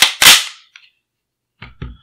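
Mechanism of an unloaded Heckler & Koch SP5 9mm pistol being worked by hand. Two loud, sharp metallic clacks come close together at the start, then two lighter clicks follow about a second and a half in, as the trigger is dry-fired and let forward to its long reset.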